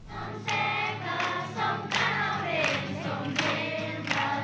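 A group of children and young people singing a song together in chorus.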